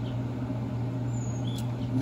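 A steady low hum over faint background noise, with a brief faint high chirp about a second and a half in.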